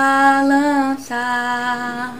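A woman singing unaccompanied, holding one long note that wavers slightly, then a second steady note from about a second in.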